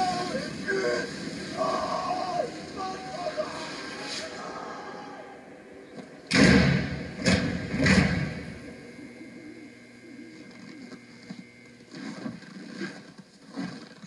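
Television soundtrack of a film scene heard in the room: voices for the first few seconds, then three loud bangs a second or less apart, about six to eight seconds in, followed by quieter sound.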